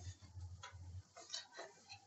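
Faint, scattered ticks and clicks over a low hum.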